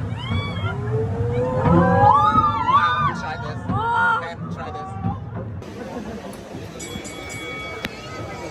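Several passengers whooping and shrieking in rising-and-falling cries over the low rumble of a steep open railway carriage descending. About halfway through the cries stop and background music takes over.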